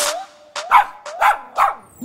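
Beagle giving three short barks in quick succession.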